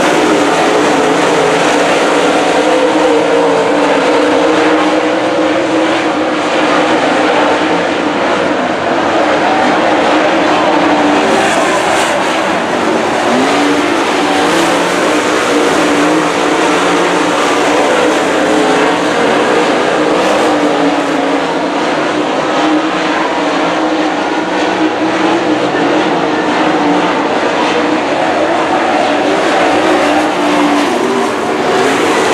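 Several dirt late model race cars' V8 engines running hard as the field laps a dirt oval, loud and continuous with no letup.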